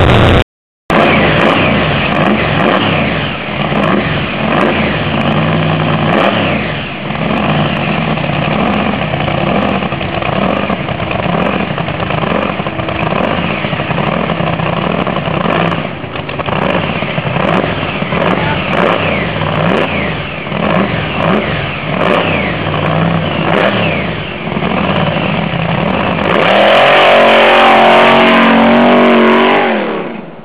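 Lifted hill-climb truck engine revving again and again, pitch rising and falling. Over the last few seconds it runs at full throttle, the loudest part, as the truck launches up a sand dune.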